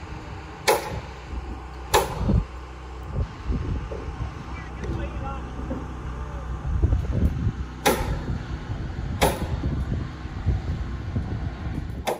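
Pneumatic framing nailer firing four sharp shots, two close together about a second apart near the start and two more later, as nails are driven into the floor framing. A low rumble sits underneath.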